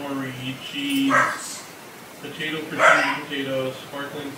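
Two short, loud barks about a second and a half apart, over muffled talking in the background.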